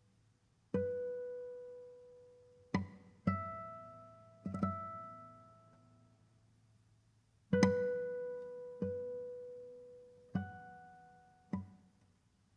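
Classical guitar playing slow, sparse single plucked notes, about eight in all, each left to ring out and fade before the next.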